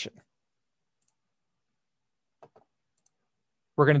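Two faint computer mouse clicks in quick succession about two and a half seconds in, in an otherwise near-silent pause.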